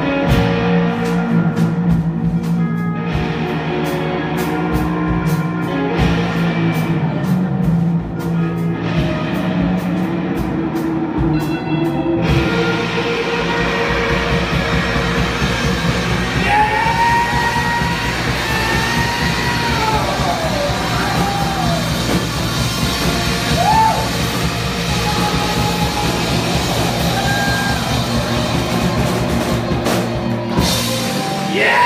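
Live rock band playing electric guitars and drums. For about the first twelve seconds the guitars play over a steady, evenly spaced cymbal beat. Then the full band comes in denser and fuller, with long gliding high notes over it.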